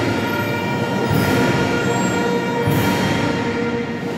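Procession band playing the closing bars of an alabado, a Guatemalan Holy Week hymn, in sustained held chords that fade slightly toward the end.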